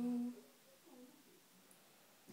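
A woman's voice holding a long, steady sung note at the end of a praising 'bravissimo', cutting off about a third of a second in; after that only quiet room sound with a faint brief murmur.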